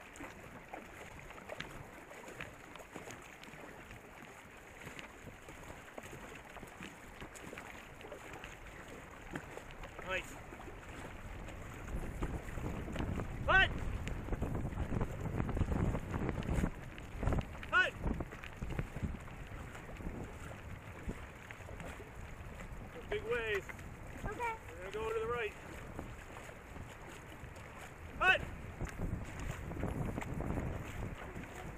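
Racing canoe being paddled: a steady rush of water against the hull with wind buffeting the microphone, heavier in the middle. A few short rising voice calls break through now and then.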